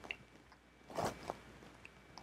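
Mostly quiet room, with one short, soft mouth sound about a second in, a faint click just after it and a few faint ticks.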